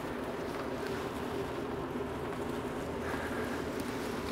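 Steady hum of an electric fan moving air, with a constant low drone.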